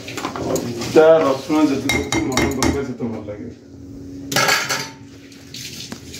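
Steel pots and kitchen utensils clinking and scraping on a gas hob and counter, with a run of sharp clinks about two seconds in and a short burst of noise near the end. A steady low hum runs underneath.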